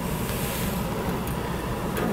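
Steady outdoor city background noise: a continuous low rumble with a faint hum above it.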